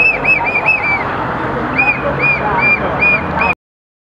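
Outdoor crowd noise with a rapid run of short, high-pitched chirps, about four or five a second, which pause briefly and return at about two a second. The sound cuts off abruptly near the end.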